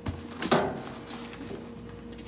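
Canvas tool bags with molded plastic bases being tipped and handled: one sharp knock about half a second in, then light rustling and small clicks.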